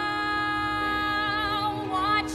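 Background song: a woman's voice holds one long sung note with a slight waver over soft accompaniment, the note bending away near the end as the next phrase begins.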